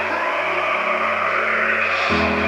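Heavily distorted electric guitar holding one sustained chord in a metal song intro, steady with no new strikes.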